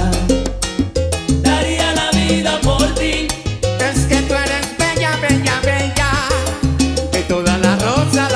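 Salsa band playing live, with congas and timbales driving the rhythm under the ensemble.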